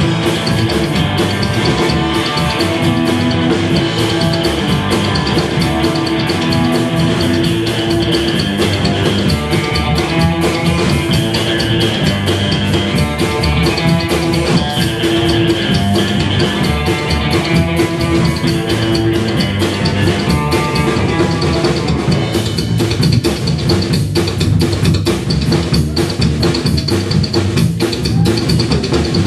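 Live rockabilly band playing: electric guitar, upright double bass and drum kit, loud and driving. In the last few seconds the guitar drops back and the drums come to the fore.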